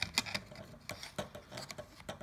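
A scatter of light clicks and taps from a part being pushed and seated by hand into a carbon-fibre RC helicopter frame.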